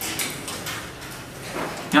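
Marker pen drawing on a whiteboard: several short, scratchy strokes as lines are drawn, followed by a man's voice at the very end.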